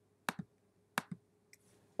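Computer mouse button clicked twice, about 0.7 s apart. Each click is a sharp press followed by a softer release.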